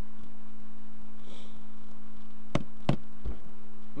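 Two sharp clicks from computer input, about a third of a second apart, over a steady low electrical hum in the microphone.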